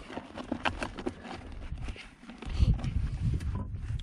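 Footsteps on loose rocky desert ground: irregular crunching clicks and knocks of gravel underfoot, with a low rumble of handling about two and a half seconds in.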